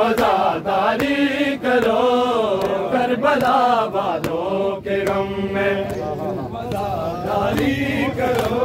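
A group of men chanting an Urdu noha, a Muharram lament, together in a slow wavering melody. Sharp hand slaps of matam, chest-beating, punctuate it at uneven intervals of about half a second to a second.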